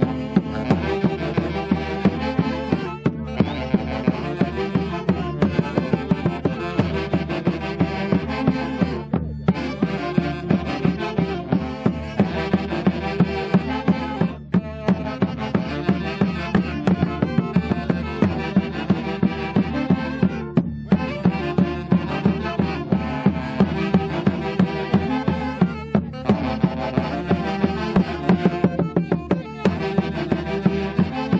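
Andean Santiago festival music from a saxophone band with a bass drum, a repeating tune driven by a steady drumbeat of about three beats a second, with short breaks between phrases every few seconds.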